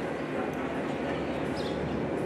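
Open show-arena ambience: a steady background murmur, with a few short high-pitched animal calls about a second and a half in.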